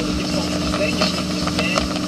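Motorboat engine running steadily under way while towing a wakeboarder, a constant drone over the rush of the churning wake.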